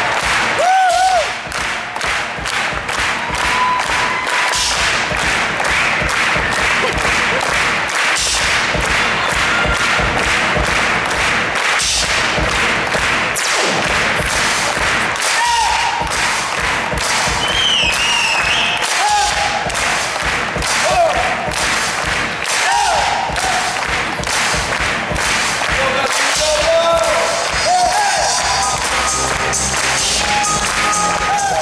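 Live band music with a steady, even beat and short pitched synth-like melodic phrases, with hand claps.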